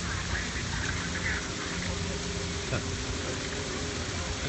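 Small waterfall splashing into a koi pond, a steady rush of falling water.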